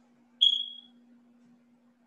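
A single short high-pitched tone, like a ding or beep, starts abruptly about half a second in and fades within about half a second. A faint steady hum sits under it.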